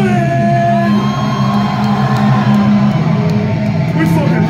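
Death metal band playing live: a sustained low guitar drone with long held higher notes over it, and shouts from the crowd.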